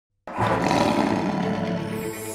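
A channel logo intro sound effect: a loud roaring rush that starts suddenly just after the opening silence and holds steady, with a sustained drone under it.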